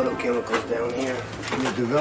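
A man's low voice speaking, with a short click about a second and a half in.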